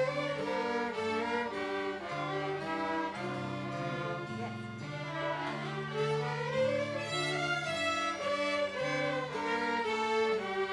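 Student string orchestra of violins and cellos with a digital piano set to its harpsichord sound, playing a slow, sad early-1500s keyboard piece over a repeating ground bass. The low notes step back and forth steadily under the melody, which rises in one phrase about six seconds in.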